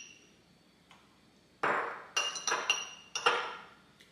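Metal spoon clinking and scraping against glass as dill relish is scooped from a glass jar into a small glass bowl. One clink at the start, then a short scrape about one and a half seconds in, followed by several quick clinks that each ring briefly.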